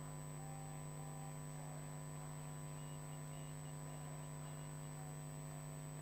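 Steady electrical hum with a faint high-pitched whine above it, unchanging throughout: background hum in the broadcast audio with no narration over it.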